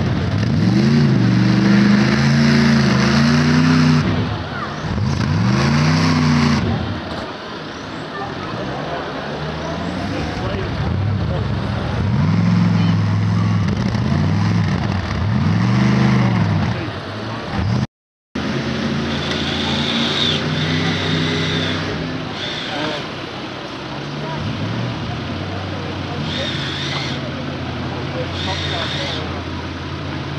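Modified off-road Land Rover's engine revving up and down in repeated surges as it climbs a steep rocky mound, the pitch rising and falling every couple of seconds. After a brief cut, a second modified 4x4's engine runs at steadier revs, with a few short high-pitched sounds over it.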